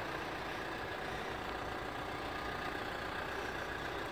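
Hyundai Santa Fe CM SUV's engine idling steadily.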